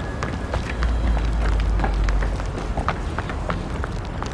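Running footsteps, several quick, uneven steps a second over a hard rooftop surface. A low rumble comes in about a second in and lasts for over a second.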